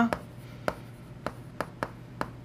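Chalk writing on a blackboard: a string of about five short, sharp taps and clicks of the chalk against the slate as letters are written.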